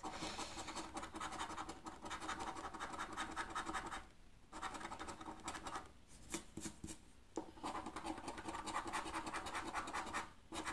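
A coin scratching the coating off a paper scratch-off lottery ticket in fast, continuous strokes, with a short pause about four seconds in and two briefer ones later.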